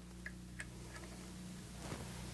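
A few faint small clicks, three in the first second, over a low steady hum: small metal parts being handled while a presser foot is fitted to a walking-foot sewing machine.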